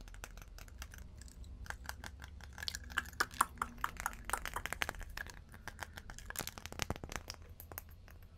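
Fingers and nails tapping and handling a glass Jimmy Choo perfume bottle and its cap: a run of irregular light clicks and taps, quickest and loudest in the middle of the stretch.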